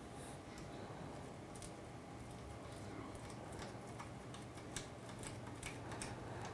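Faint, scattered light clicks and scrapes of a small tool working a tiny screw out of a 3D printer's extruder carriage. The clicks come more often in the second half, over a low steady hum.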